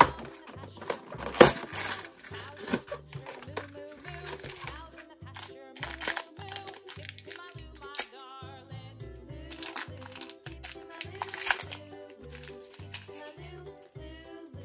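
A foil blind bag crinkling and rustling as it is pulled from its slot and torn open, with sharp crackles at irregular moments. The loudest crackles come at the start and about one and a half seconds in. Throughout, background music with a steady, even beat plays underneath.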